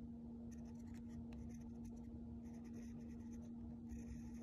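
A fine drawing point scratching softly over thin tracing paper in short strokes as a pattern is traced, with a steady low hum underneath.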